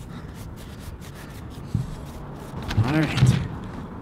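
Faint scrubbing of a wet baby wipe on the rubber outsole of a running shoe, over low outdoor background noise. About three seconds in, a man makes a short wordless sound with his voice.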